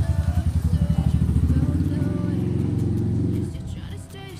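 Motorcycle engine running close by with a quick putter. Its pitch climbs around the middle as it speeds up, then it drops away shortly before the end.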